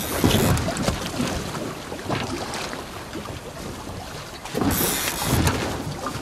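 Wind buffeting the microphone over sea water washing around a small fishing boat, with a louder rush of noise about five seconds in.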